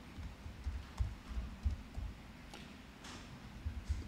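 Typing on a laptop keyboard: an irregular scatter of soft key taps and low thumps.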